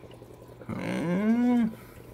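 A man's voice making one drawn-out wordless hum or "ooh", about a second long, that rises in pitch and falls back, beginning a little under a second in.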